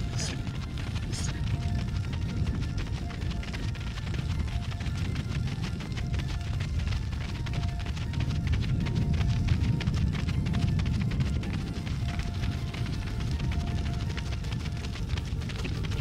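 Wind buffeting the microphone, a steady low rumble that swells and eases, with faint music underneath.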